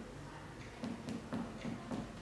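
Finger-on-finger percussion of the abdomen: a quick run of about five short, soft taps, starting a little under a second in. The examiner is percussing up the right side to find the liver's lower border, where the note changes from tympanic to dull.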